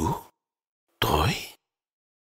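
A man's voice in two short wordless utterances, like sighs or exclamations, each about half a second long and about a second apart, with complete silence between them.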